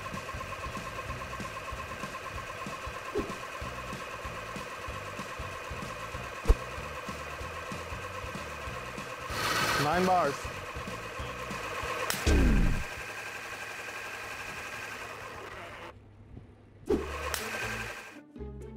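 3D-printed six-cylinder radial air compressor running steadily at high pressure, a continuous whine made of several fixed tones. About twelve seconds in there is a sharp crack followed by a quickly falling tone. The running sound drops out suddenly near the end.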